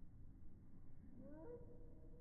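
A faint animal call about a second in, rising in pitch and then held briefly, over low background noise.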